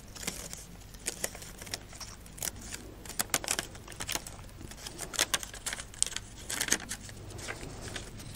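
A fan-folded sheet of coloured paper with cut-out shapes being pulled open by hand: irregular crisp crackles and rustles of paper as the folds are spread out.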